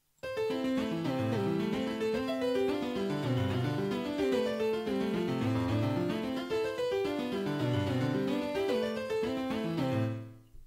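FL Studio's FL Keys software piano playing back a MIDI pattern: a chord arpeggiated up and down in quick, even steps under a melody line. It starts just after the opening and stops right at the end.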